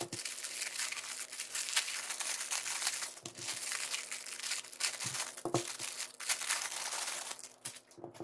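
Thin clear plastic packaging bags crinkling and crackling continuously as hands pull them open and unwrap small accessories, dying down just before the end.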